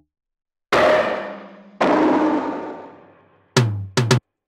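Two noisy electronic synth stabs about a second apart, each hitting sharply and fading out slowly.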